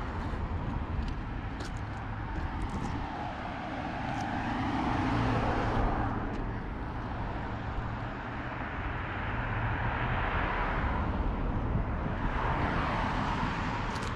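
Road traffic: cars passing on the road across the bridge, their tyre noise swelling and fading twice, over a steady low hum.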